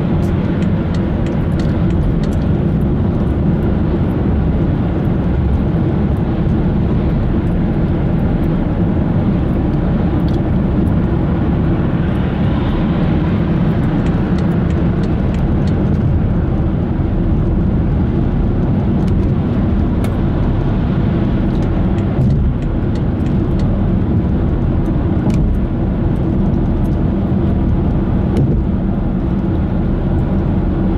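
Steady road noise of a car driving at speed, heard from inside the cabin: a continuous low rumble of tyres and engine, with occasional faint light ticks.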